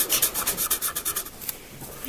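Felt-tip marker rubbing on paper in quick, repeated short strokes as a small eye is coloured in black, fading out near the end.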